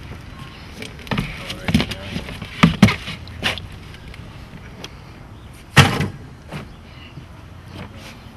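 Knocks and thumps from handling a flounder and a landing net into a plastic tub: a quick run of knocks in the first few seconds, then a single loudest thump about six seconds in.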